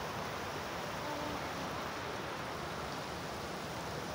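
Floodwater rushing steadily through an overflowing storm drain.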